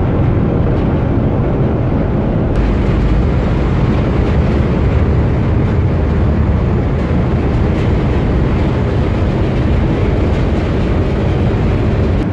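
Steady, loud rumble of a cargo ship's engine and machinery, heard from its deck while the ship manoeuvres to turn and berth. About two and a half seconds in, the rumble becomes fuller and harsher.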